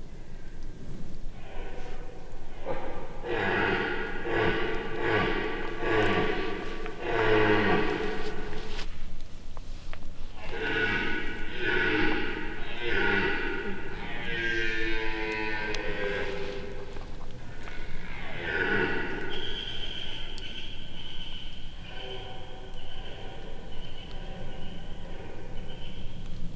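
Red deer stag roaring in a series of drawn-out groans during the rut, over background music.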